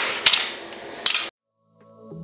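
Clinks and taps of metal ring donut cutters being handled on a countertop, with a sharper metallic clink just after a second in. The sound cuts off abruptly, and after a brief gap soft background music begins near the end.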